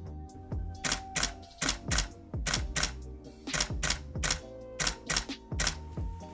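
Camera shutter firing in a rapid run of single shots, about three to four clicks a second, as a handheld series of frames is taken for a focus stack.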